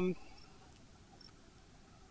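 A held spoken 'um' trails off just after the start, leaving quiet outdoor ambience with faint, short high-pitched chirps roughly once a second.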